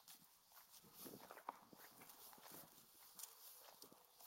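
Near silence, with faint, irregular soft steps of someone walking across a grass lawn.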